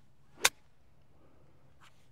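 A golf club striking the ball on a chip shot: one sharp click about half a second in.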